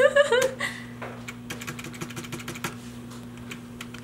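A short laugh, then typing on a computer keyboard: a quick, uneven run of key clicks, over a steady low electrical hum.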